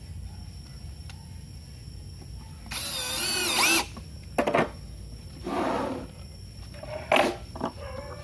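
Cordless drill driving a screw through a concealed hinge into a plywood cabinet door: one loud run of the motor of about a second, its pitch bending as the screw bites, followed by a few shorter bursts.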